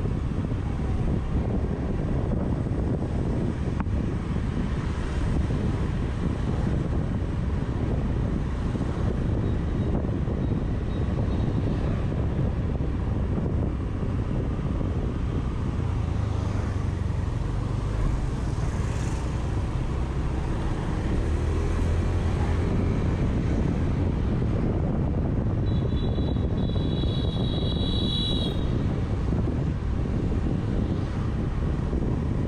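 Riding a Honda scooter through street traffic: a steady low rumble of wind on the microphone mixed with the scooter's engine running and other motorbikes nearby. Near the end a high-pitched tone sounds for about three seconds.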